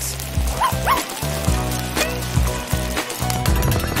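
Background music with a steady beat, over which a small dog gives two short yips about half a second and a second in.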